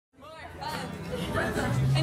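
People talking and chattering in a room, fading in at the start.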